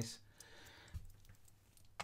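Faint handling sounds with two light clicks, one about a second in and one near the end, as a small metal practice lock plug with its key inserted is handled and set down into a plastic pinning tray.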